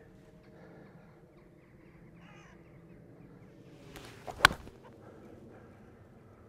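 Callaway Jaws Raw wedge hitting a golf ball off the fairway: a short swish of the downswing, then one sharp click of a reasonable strike about four and a half seconds in.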